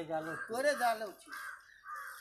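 Voices talking, then a bird giving about three short calls in the second half.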